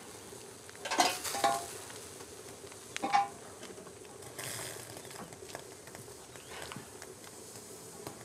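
Dishes and utensils clattering and clinking: a cluster of knocks about a second in and another near three seconds, some with a short ring, over a faint hiss.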